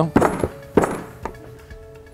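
A hammer tapping a metal seal and bearing driver to seat a seal retainer into a Cummins vacuum pump housing: about four sharp taps in the first second and a half, then the strikes stop once the retainer sits flush at its marks.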